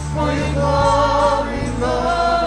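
Live church worship band and singers performing a gospel praise song, the voices holding long notes over a steady bass line.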